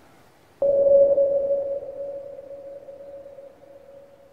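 A single steady electronic tone, pitched in the middle range, starts suddenly about half a second in and slowly fades away.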